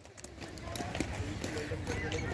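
Inline speed skates passing close by: wheels rolling on the track surface, with a few light clicks from the skaters' strides, under faint voices in the background.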